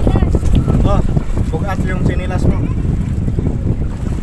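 Wind buffeting the microphone in a constant low rumble, with high-pitched children's voices calling out several times in short bursts over it.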